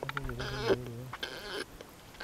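A low, steady-pitched vocal sound lasting about a second, followed by a shorter one.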